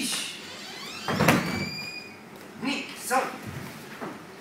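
Two karate students moving through a kata on a wooden floor: a loud, sudden swish and thud of gis and bare feet about a second in as they step into a front stance and punch, followed by two short voice sounds near the end.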